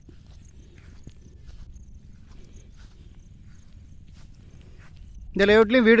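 Quiet outdoor ambience: soft footsteps through grass over a low rumble, with a faint steady high-pitched tone throughout. A man's voice starts near the end.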